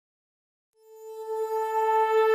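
A single held musical note, pitched around A above middle C, that fades in out of silence under a second in and swells louder, holding one steady pitch.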